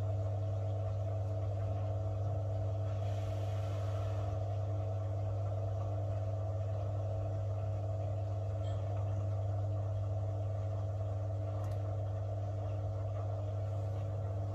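Steady low electric hum from a Beko front-loading washing machine as its empty drum turns slowly, with a brief faint hiss about three seconds in.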